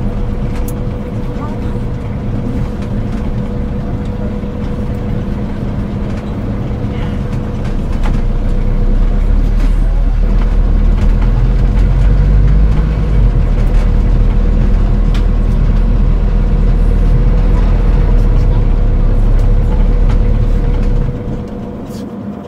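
Added ambience of a car driving, a steady engine drone. A low rumble grows louder about eight seconds in and drops away near the end.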